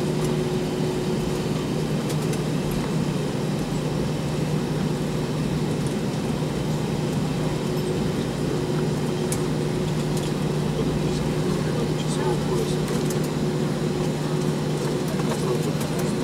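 Steady cabin noise inside an Airbus A320-232 taxiing, its IAE V2500 engines at idle: a constant low hum with a thin steady tone over it.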